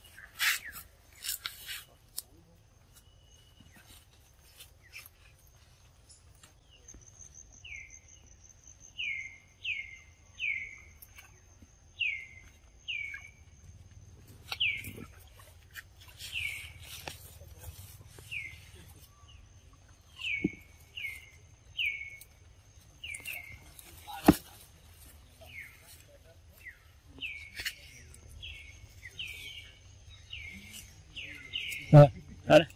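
A bird calling over and over with short, high, down-slurred chirps, about one to two a second, beginning several seconds in. A faint steady high whine runs beneath the calls, and a few sudden clicks and knocks stand out, the sharpest about 24 seconds in.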